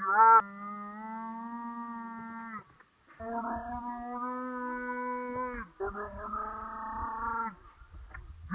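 A voice holding three long, steady drawn-out notes of about two seconds each, the first beginning with a short, loud rising cry and each sagging in pitch as it ends.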